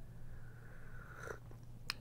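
A person sipping hot coffee from a cup: a soft, airy slurp lasting about a second, followed by two small clicks.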